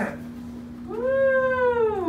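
A young child's long, drawn-out vocal "oooh", starting about a second in, rising slightly then falling in pitch, over a steady low hum.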